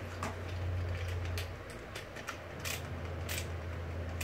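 Skateboard and hand tools being handled while a truck is bolted on: a few sharp clicks and taps over a steady low hum.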